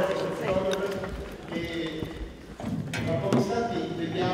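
People talking off-microphone in a large hall, with high-heeled shoes clicking on the stage floor as someone walks.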